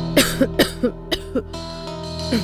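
A man coughing in a rapid fit, about six sharp coughs in the first second and a half, over background music.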